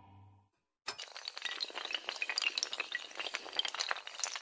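Music fades out, then after a moment of silence an animation sound effect of shattering glass: a sharp crash about a second in, followed by a dense run of small tinkling, clinking pieces.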